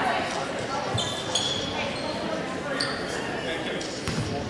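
Echoing gym crowd chatter with sneakers squeaking on the hardwood floor, about a second in and again near the end, and a basketball bouncing once on the court.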